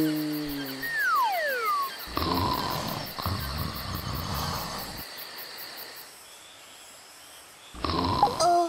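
Cartoon sound effects over a background of chirping insects: a short pitched call, two falling whistle-like glides, then about three seconds of rumbling noise that stops suddenly, leaving a quiet tail.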